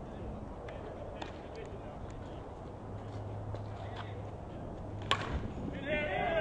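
Outdoor softball field ambience with faint distant voices and a low steady hum through the middle. One sharp crack comes about five seconds in.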